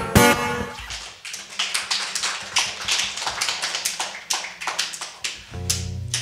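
An acoustic guitar's closing chord rings out, then light, scattered clapping from a small audience, with separate claps rather than a dense wash. Near the end another guitar chord sounds.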